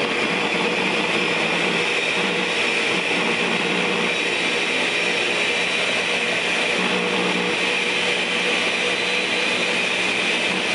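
Countertop blender running steadily, blending a pumpkin protein smoothie.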